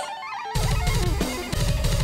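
Loud rock music on electric guitar; drums and bass come in heavily about half a second in.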